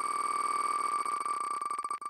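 Spin tick sound of the wheelofnames.com online name-picker wheel: a fast run of identical clicks, at first so close together that they run into one tone, then coming further apart as the wheel slows.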